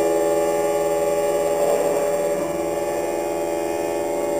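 A dense drone of several overlapping held notes from a contemporary chamber ensemble, with a bowed cello among them, steady and unchanging apart from a slight drop in level about halfway through.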